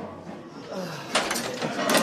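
A group of men's voices, indistinct chatter and laughter, quieter at first and picking up about half a second in, with two short sharp noisy bursts about a second in and near the end.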